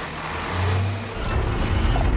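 Film soundtrack of heavy truck engines running, a deep steady drone with music mixed over it; the low drone swells about halfway through.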